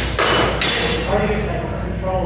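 Practice longswords clashing, with two sharp metallic crashes in the first second of blade-on-blade contact.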